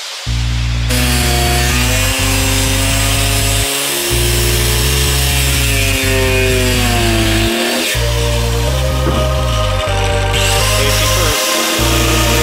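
A corded angle grinder cutting into a wooden board, a harsh high hiss from the disc in the wood. It runs under loud electronic music with a heavy bass beat that drops out briefly about every four seconds.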